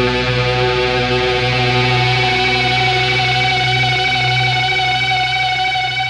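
Rock music: electric guitars hold one sustained, ringing chord over a steady low bass note, with no drums or vocals.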